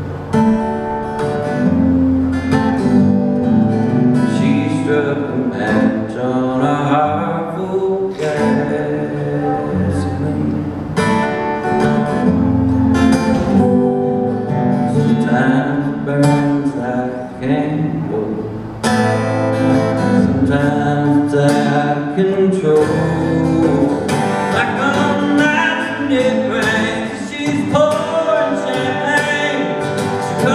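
Live solo performance: a steel-string acoustic guitar strummed under a man's singing voice.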